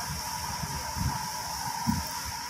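Wind buffeting the microphone in irregular low rumbles over a steady hiss, with a thin steady tone running underneath.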